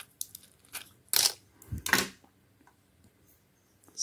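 Foil strip pack of tablets being torn open and a tablet pushed out: a few small clicks, then two louder crackles of tearing foil about one and two seconds in.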